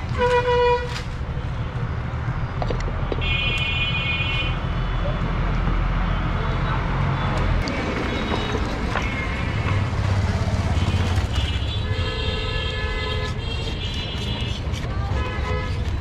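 Vehicle horns honking on a busy street over a steady low traffic rumble. A short loud horn sounds right at the start, a higher-pitched horn follows a few seconds in, and a longer horn sounds about three-quarters of the way through.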